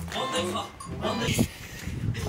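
Several people's voices calling out and talking over background music.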